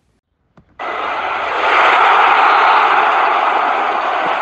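A whooshing transition sound effect for an animated title card: a loud, even rushing noise with no pitch that starts abruptly about a second in, swells and holds steady.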